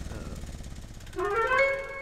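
A low, pulsing engine rumble, then a little over a second in a single musical note from the film score slides upward and holds steady, louder than the rumble.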